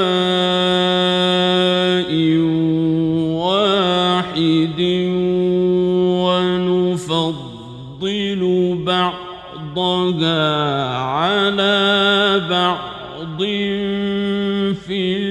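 A solo male voice reciting the Quran in melodic mujawwad (tajweed) style, drawing out long held notes. The notes waver and slide up and down in pitch, with brief pauses for breath between phrases.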